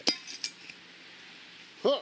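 A single sharp clink of a small hard object knocked against something, followed by a fainter tick about half a second later. A voice says "uh" near the end.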